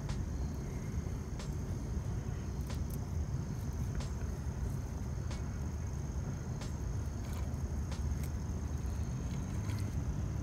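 Steady low outdoor rumble, with a few faint scattered clicks of fingers handling a jig and its soft-plastic craw trailer.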